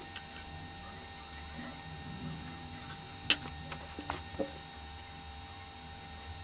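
Quiet room tone with a few small clicks as thin wire leads are handled and attached to the terminals of a large electrolytic capacitor: one sharp click about three seconds in, then two softer ones about a second later.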